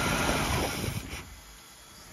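Mercruiser 4.3-litre V6 marine engine running, then dying and winding down to a stop about a second in, as the shift kill switch cuts the ignition to the new Delco EST distributor during a simulated shift.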